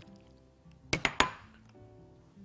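A bowl is tapped against the rim of a frying pan while tomatoes are emptied into it: three sharp clinks in quick succession about a second in, over soft background music.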